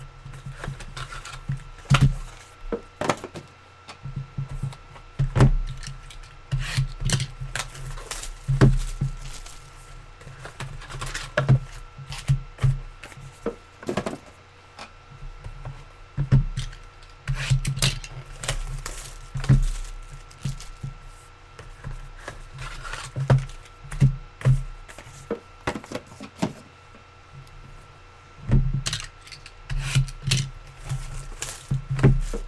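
Trading card boxes and packs being opened and handled: irregular scrapes, rubs and sharp knocks, some close together, with a faint steady electrical hum underneath.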